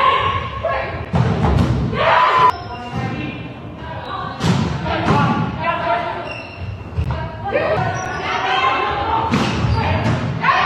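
Volleyball rally sounds in a reverberant sports hall: several sharp thuds of the ball being struck and hitting the wooden floor, mixed with players' shouted calls.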